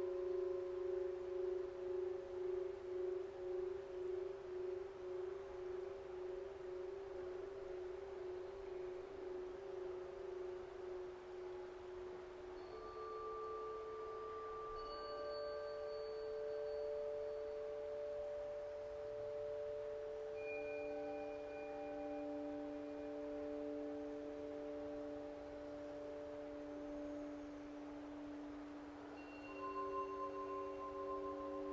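Slow meditative background music of long, ringing bell-like tones that swell and fade. The first tone wavers as it dies away, new tones enter about twelve and twenty seconds in, and another set enters near the end.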